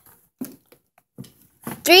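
Mostly quiet room, with a few faint short rustles, then a voice starting a countdown near the end.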